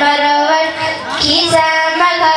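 A child singing a Gujarati children's song in long held notes, with music behind.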